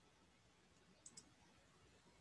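Near silence, with two faint, quick clicks close together about a second in.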